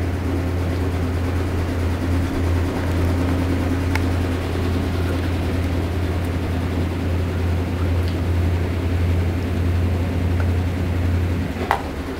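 A steady low hum with an even hiss over it, with a couple of faint clicks; the hum stops suddenly near the end.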